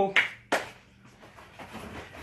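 The tail of a man's voice, then a single sharp knock about half a second in that dies away quickly.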